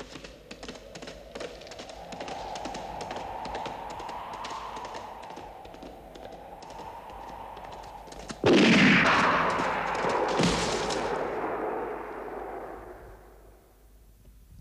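Gunfire sound effects: a stretch of scattered crackling shots, then a loud blast a little past the middle and a second one about two seconds later. The sound then dies away.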